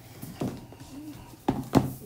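Two sharp knocks on a tabletop about a quarter second apart, a little past the middle, as a trading-card box is set down and handled.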